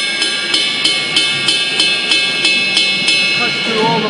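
Drumstick striking the bell of an Istanbul Mehmet Realistic Rock cymbal, about three strikes a second, each one bright and ringing with a big bell sound. The strikes stop about three seconds in and the ring carries on under the voice.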